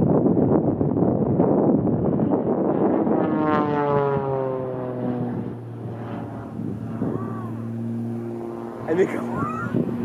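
Extra 300L aerobatic plane's six-cylinder Lycoming engine and propeller, loud and rasping at first. A few seconds in, the note falls in pitch and settles into a steady, lower drone.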